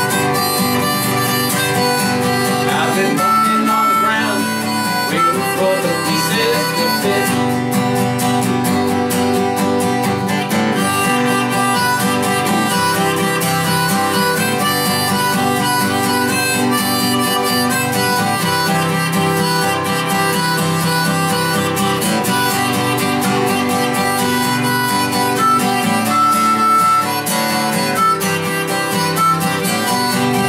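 Harmonica solo over a steadily strummed acoustic guitar, an instrumental break between the sung verses of a country-folk song.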